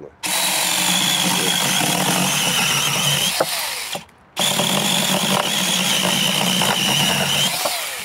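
Cordless battery mini chainsaw running and cutting through a cherry branch, with a steady high motor whine. It runs in two bursts of about four and three and a half seconds, with a brief stop between them.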